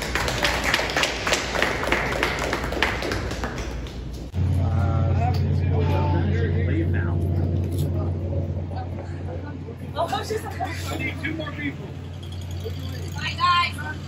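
A small room of people applauding for about four seconds. Then a sudden change to a steady low hum with brief snatches of talk.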